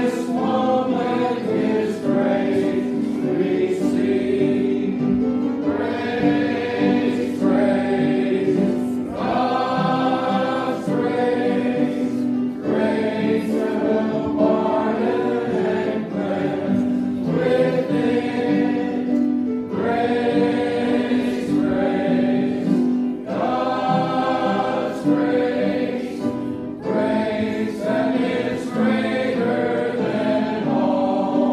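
Church congregation singing a hymn together, phrase after phrase with short breaks between lines.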